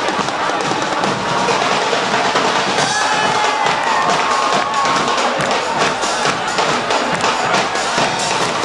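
Guggenmusik carnival band playing live: brass with sousaphones, and drums beating a dense, loud rhythm, with crowd noise underneath.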